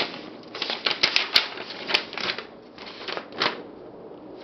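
Crumpled kraft-paper packing and a paper sheet crinkling and rustling as hands rummage in a cardboard box, in a string of short, irregular crackles.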